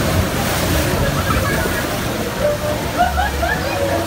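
Log-flume water rushing and splashing around the ride boat, a steady wash of noise.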